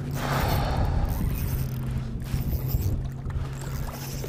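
A boat's motor humming steadily under water splashing and sloshing as a big bass thrashes at the surface beside the hull, with a louder burst of noise in the first second.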